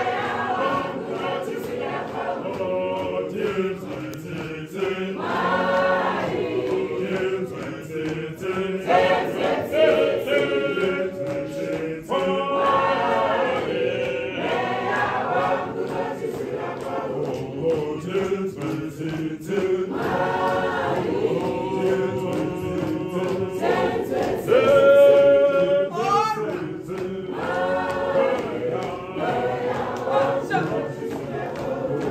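A church choir singing a marching processional hymn, voices rising and falling in repeated phrases.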